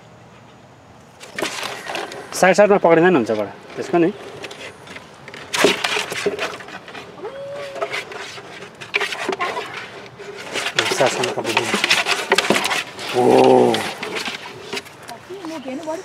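Brief exclamations of voices over rustling, scraping and sharp knocks as a snapping turtle is handled and lifted in a plastic cooler.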